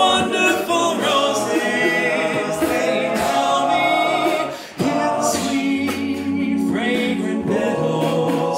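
Men's a cappella choir singing in harmony, led by a solo voice on a microphone. The voices break off briefly a little past the middle, then carry on.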